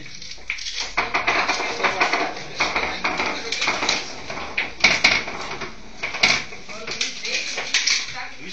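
Several people talking at once, mixed with irregular clinking and clacking of hard objects, with a few sharper knocks about five and six seconds in.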